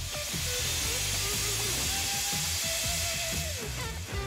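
Steady hiss of escaping steam, with background music underneath.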